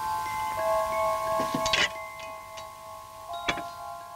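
Chime-like music: several bell tones held and overlapping, a new note joining about half a second in, with a sharp click near the middle and another about three and a half seconds in.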